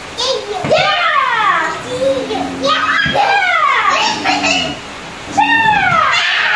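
Children's excited, wordless voices: high squeals and shouts during play, several of them sliding down in pitch, in bursts about a second in, around three seconds in and near the end.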